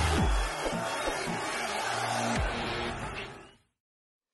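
Logo intro sting: loud produced music with deep, falling bass hits, fading out about three and a half seconds in.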